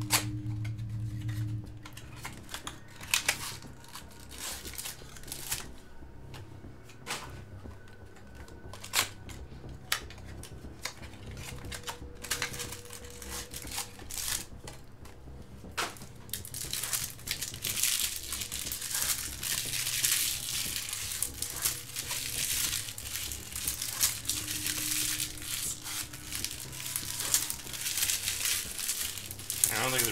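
Trading-card pack wrappers crinkling and tearing as packs of baseball cards are ripped open. The first half has only scattered sharp clicks and taps of cards and boxes being handled; the crinkling then runs on without a break from about halfway through.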